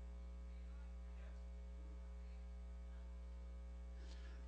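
Steady electrical mains hum with a low drone and a ladder of higher overtones.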